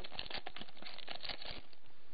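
Foil booster-pack wrapper and trading cards being handled: a steady run of quick crinkles and small clicks.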